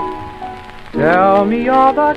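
Instrumental passage of a 1920s popular-song record: a held note fades, then about a second in a note swoops upward into a loud melody line. Crackling surface noise of an old shellac disc runs underneath.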